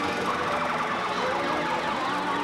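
A siren wailing, its pitch sliding up and down over several overlapping tones, over parade music.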